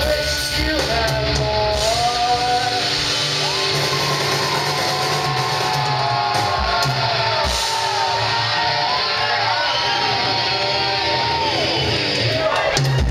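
Live heavy rock band playing loudly in a reverberant room: distorted electric guitars and drums, with shouted vocals.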